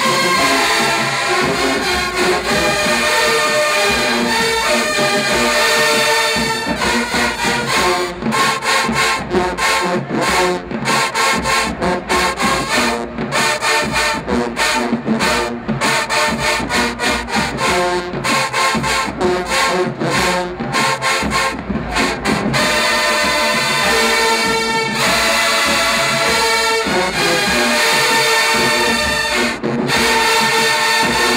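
A large university marching band in the stands playing, with brass and sousaphones. It holds long loud chords for about the first six seconds, switches to short punchy rhythmic hits from about seven to twenty-two seconds in, then returns to held chords.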